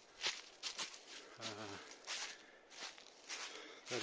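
Footsteps crunching through a thick layer of dry fallen leaves on a steep forest path, a few irregular steps.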